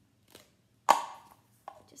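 Objects being handled on a hard kitchen countertop: one sharp knock with a brief ring about a second in, then a lighter knock near the end.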